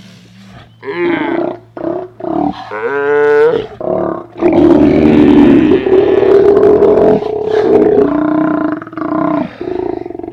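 Steller sea lions on a haul-out calling: several short roars in the first few seconds, then one long, loud roar that holds for about three and a half seconds through the middle, followed by more short calls.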